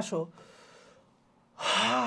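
A man's loud, breathy voiced gasp or sigh about one and a half seconds in, lasting under a second, after the last word of a sentence trails off and a faint breath.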